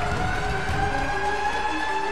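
Arena goal siren sounding one long tone that rises slowly in pitch, marking a home-team goal, over a cheering crowd.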